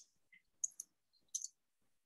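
A few faint, sharp little clicks: one at the start, two at about two-thirds of a second, and a short cluster near one and a half seconds.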